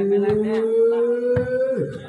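A male volleyball commentator's voice holds one long drawn-out note, its pitch rising slowly, and breaks off near the end. Two short knocks sound under it.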